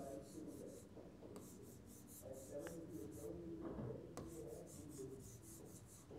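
Faint scratching and tapping of a stylus drawing on an interactive touchscreen, in several short runs of quick strokes with pauses between them.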